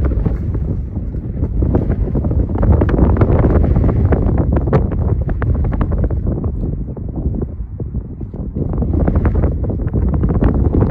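Strong wind buffeting the microphone: a loud, low rumbling roar that surges in gusts and eases briefly about two-thirds of the way through.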